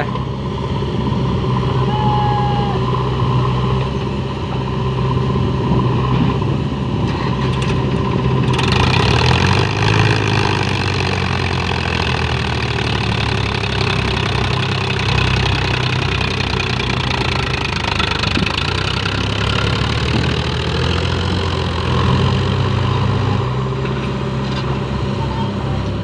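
Powertrac Euro 50 tractor's diesel engine running while hitched to a fully loaded sand trailer. About eight seconds in it gets louder and revs up as the tractor pulls away under the load.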